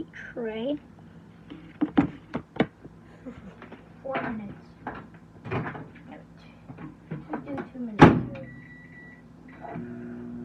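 Kitchen handling clatter: scattered knocks of things being picked up and set down, then a loud bang like a door shutting about eight seconds in, followed by a short high beep.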